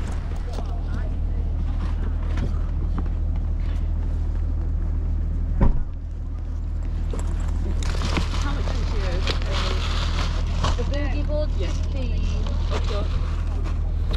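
Chatter of people talking, over a steady low rumble, with one sharp knock close to six seconds in.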